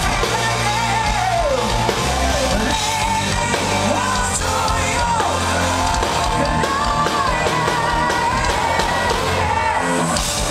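Live progressive metal band playing: a male lead singer sings a sliding melodic line with long-held notes over electric guitar, bass and drums, recorded loud from the audience.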